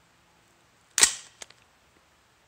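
A single shot from an AR-15-style rifle about a second in: a sharp crack that fades quickly. A short, faint click follows less than half a second later.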